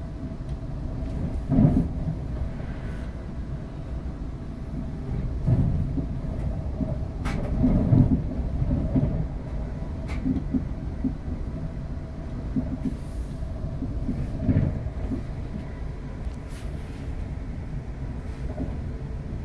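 Cabin running noise of a Class 350 Desiro electric multiple unit in motion: a steady low rumble from wheels on rail, with a few heavier thumps and a couple of sharp clicks along the way.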